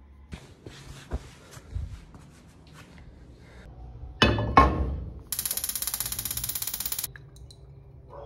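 A frying pan set down on a gas stove's metal grate with two sharp clanks about four seconds in, after light handling knocks and rustles. About a second later comes a steady high hiss with fast even ticking, lasting about two seconds, then stopping.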